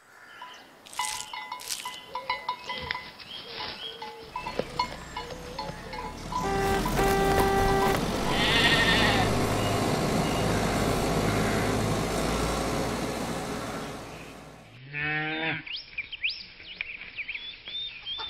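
Cartoon farm sound effects: a sheep bleating with a wavering, stepped call about three-quarters of the way through, after a long swelling rush of noise in the middle with a few short tones and chirps over it.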